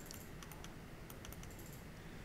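Faint, irregular clicking of a computer mouse and keyboard as folders are opened one after another.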